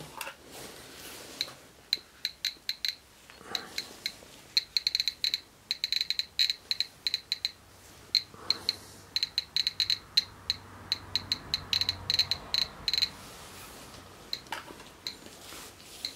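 GMC-300E Plus Geiger counter clicking irregularly as it counts radiation from a uranium ore sample: short high beeps, sparse at first, coming in dense runs a few seconds in and again past the middle, then thinning out near the end.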